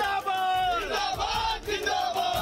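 A crowd of men shouting and cheering together in celebration, several voices overlapping, while the drumbeat of the backing music nearly drops out.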